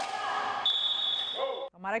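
Court sound from blind football training on an indoor futsal court, with a single high, steady whistle blast lasting about a second. The court sound cuts off abruptly near the end.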